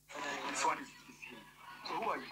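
Indistinct speech at a low level, heard as played-back video audio, fading after about a second.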